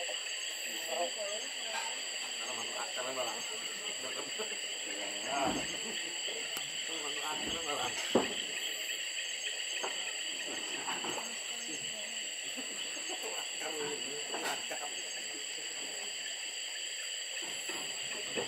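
Evening chorus of tropical forest insects: a steady, high-pitched drone in several bands, with indistinct voices murmuring beneath it.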